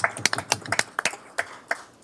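A small group of people clapping: a short, sparse round of applause of sharp, irregular claps that thins out near the end.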